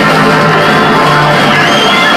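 A live rock band jamming: electric guitars and a bass guitar playing loudly and without a break.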